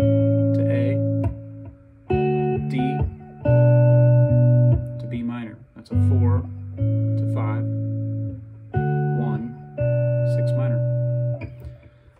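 Semi-hollow electric guitar (a vintage Gibson ES-335) playing the song's chord progression: seven chords struck in turn, each left to ring out before the next.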